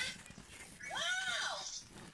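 A person's voice, one drawn-out vocal sound that rises and then falls in pitch, lasting about a second and starting about a second in.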